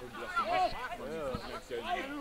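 Faint voices of men calling out across a football pitch, rising and falling in short arched shouts. A single dull thud just past halfway.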